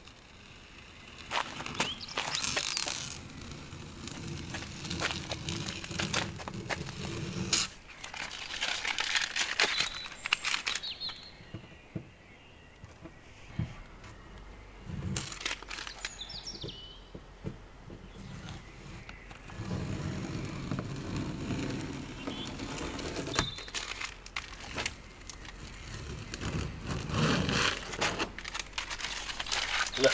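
Blue painter's tape being peeled off a van's painted sill and body panel, a crackling rip that comes in several long pulls with quieter pauses between them.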